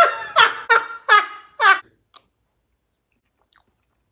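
A man laughing in short bursts that fall in pitch, about five in the first two seconds, then the sound cuts off abruptly to silence.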